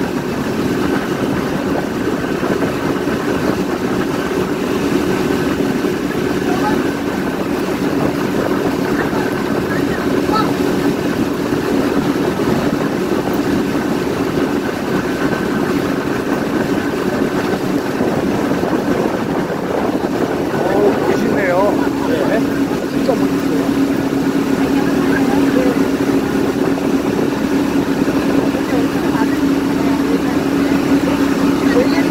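Motorboat engine running steadily at speed, with water rushing past the hull and churning in the wake. The engine's hum grows a little stronger in the last third.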